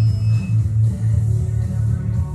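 Background music with a guitar and a strong, pulsing bass line.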